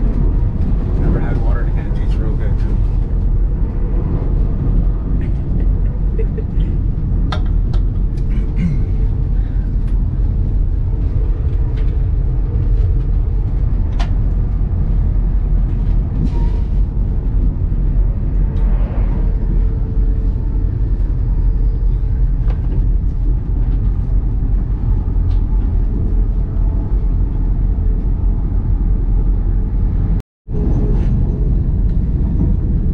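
Steady low rumble of a passenger train running on the rails, heard from inside the carriage, with faint voices of other passengers now and then.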